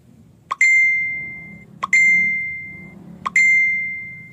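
A Windows laptop's alert chime from its speakers: three bell-like dings about a second and a half apart, each just after a short click and ringing out for about a second.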